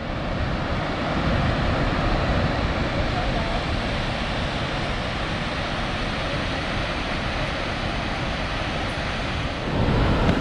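Waterfall on the McCloud River: a steady rush of falling and churning water, with some wind on the microphone, growing a little louder near the end.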